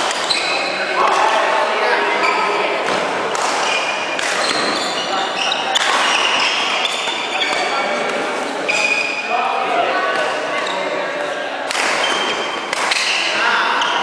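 Badminton play in a large, echoing sports hall: rackets striking the shuttlecock, a hard smash among them, and sneakers squeaking on the wooden court, with people's voices in the background.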